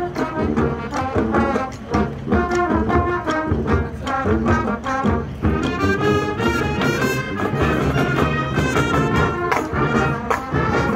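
Marching band playing a brass arrangement with percussion underneath, the brass carrying the melody over a steady beat.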